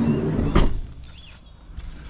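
A van door being shut: one loud thump about half a second in.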